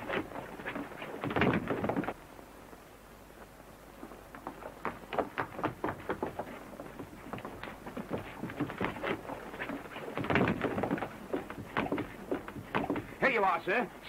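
A fistfight between men: irregular thuds and scuffling with shouts and grunts. It is loudest in the first two seconds and again about ten seconds in.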